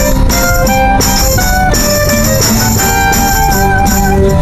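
Klezmer band music: a melody line of held, stepping notes over drums and percussion.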